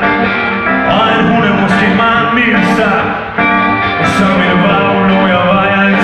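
Live rock band playing loud: a male lead vocal over electric and archtop guitars and keyboard.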